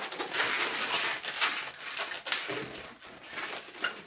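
Latex 260 modelling balloons rubbing and squeaking against each other and the hands as a bubble is pinch-twisted, with a short high squeak near the end.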